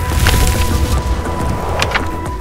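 A cinematic transition sound effect over a low rumble: a noisy crackling burst about a quarter of a second in and a sharp crack near the end, while the steady tones of the music break off.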